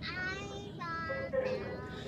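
A young child chanting 'mommy' over and over in a high sing-song voice, in drawn-out, wavering notes, about two phrases in quick succession and then a fainter one.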